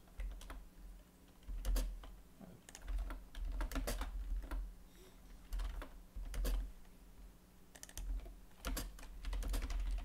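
Typing on a computer keyboard: irregular keystrokes in short bursts with pauses between them.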